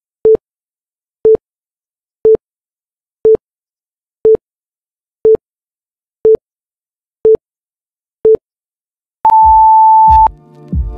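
Electronic interval-timer countdown: nine short beeps, one a second, then a longer, higher beep about nine seconds in that signals the start of the work interval.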